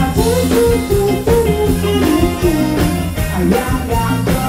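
Live band playing Thai ramwong dance music through a PA, a male singer over horns, keyboard and drums with a steady beat.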